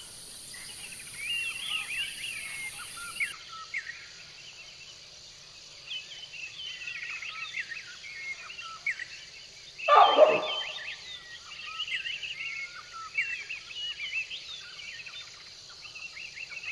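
Outdoor birdsong: many small birds chirping and singing in quick, overlapping phrases over a steady high insect drone, with one louder, lower call about ten seconds in.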